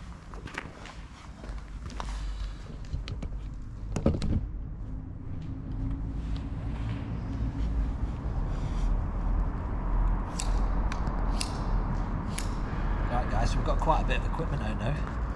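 Scattered knocks and clicks of equipment being handled and set down on a concrete floor, with one louder thump about four seconds in, over a low rumble that grows louder.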